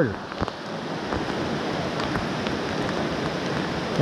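Heavy rain pouring onto the surface of a stream pool: a steady hiss of falling rain with scattered sharper drop taps.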